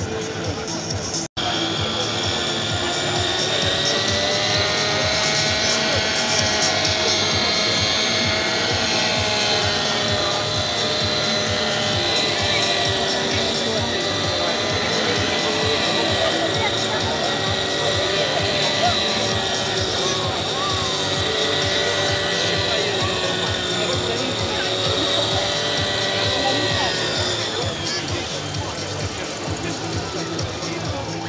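Radio-controlled model helicopter running up: a steady whine that rises a little in pitch over the first few seconds, holds with slight wobbles, and fades near the end, over crowd chatter.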